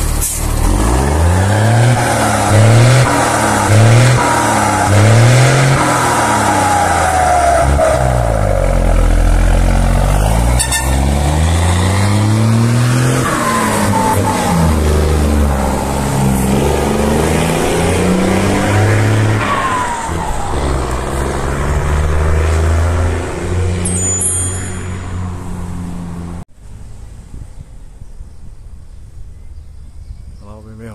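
Mercedes-Benz 1620 truck's six-cylinder turbodiesel pulling away under load, its revs rising and falling through the first gear changes, then running on more steadily. A turbocharger whistle, from a comb fitted in the turbo intake to make it sing, falls in pitch several times. Near the end the sound drops suddenly to a much fainter engine.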